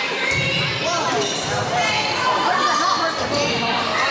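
Volleyball rally in a gymnasium: the ball struck sharply a few times, with many players' and spectators' voices calling and shouting over one another in the echoing hall.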